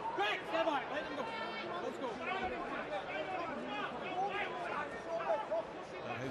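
Boxing arena crowd shouting and yelling, many voices overlapping at once.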